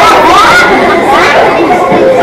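Several people's voices chattering and talking over one another.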